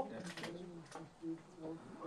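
Faint low cooing of a bird in the background, two short calls in the second half, in a pause between a man's sentences.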